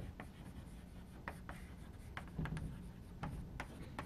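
Chalk writing on a chalkboard: faint, irregular taps and scrapes as the letters are written.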